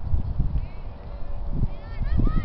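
Soccer-field ambience: faint, distant high-pitched shouts from players and spectators over a steady low rumble on the microphone.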